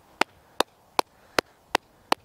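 Five sharp, evenly spaced ticks, about two and a half a second, like a clock ticking.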